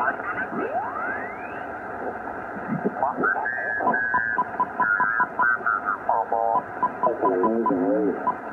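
Shortwave transceiver audio in lower sideband while being tuned across the 40-meter band: steady band noise, a rising whistle early on as a carrier sweeps past, then garbled, off-tune sideband voices with a run of short even beeps, about five a second.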